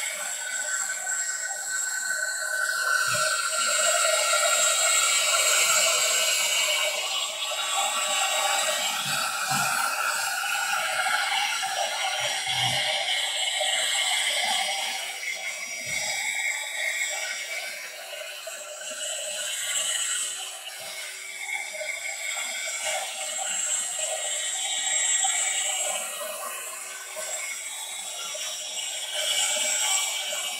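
Handheld craft heating tool (embossing heat gun) running continuously, blowing hot air to dry wet craft mousse: a steady rush of air over a constant motor hum.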